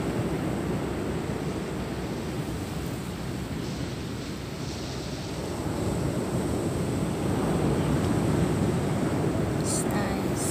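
Surf on a sandy beach, a steady rush of waves breaking and washing in that eases a little and then swells again later on. There is low wind rumble on the microphone and a couple of faint clicks at the very end.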